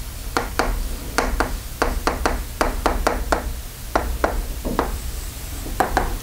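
Chalk tapping on a blackboard while writing: a quick, irregular run of sharp taps, several a second.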